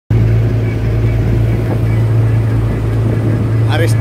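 Engine of a small wooden boat running steadily underway, a constant low drone.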